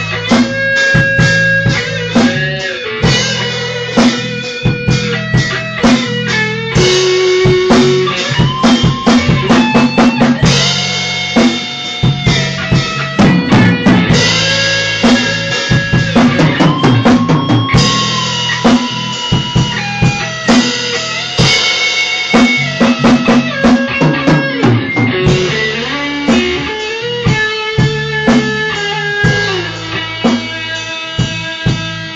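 Rock band of electric guitar, bass and drum kit playing an instrumental passage without vocals. The drums keep a steady beat under sustained guitar notes that hold and slide between pitches.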